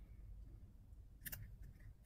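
Faint handling of a small paper snippet being placed and pressed onto a paper tag by hand, with one short crisp paper rustle a little past a second in, over a low room hum.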